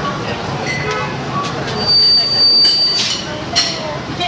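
Room noise at a small live show between songs, recorded on cassette: low chatter and amplifier hum, with a brief high whine about two seconds in and a few clicks near the end.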